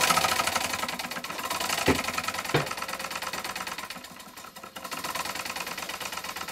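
Stuart S50 model steam engine running fast on steam: a rapid, even exhaust beat with a light mechanical rattle, which the owner's friend puts down to lubricating oil that is a bit on the thin side. Two sharp clicks come about two seconds in, and the beat dips briefly a little after the middle.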